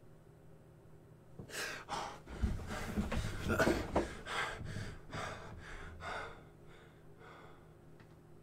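A man breathing in a series of short, uneven breaths and gasps, from about a second and a half in until about six seconds in.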